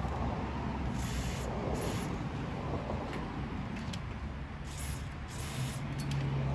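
Aerosol can of WD-40 silicone dry-lube spray hissing through its straw nozzle in four short bursts, two quick pairs, as lubricant is sprayed into a stiff slide-out bed rail.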